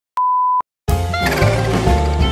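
A single steady electronic beep lasting about half a second, then a brief silence, then music with a heavy bass line starting just under a second in.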